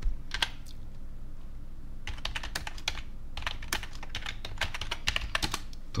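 Typing on a computer keyboard: a few keystrokes early on, then a quick run of keystrokes from about two seconds in as a web search query is typed.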